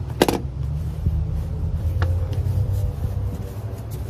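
A knife drawn along a metal straightedge on thin board, failing to cut through. There is a sharp knock just after the start and a click about two seconds in, over a steady low rumble.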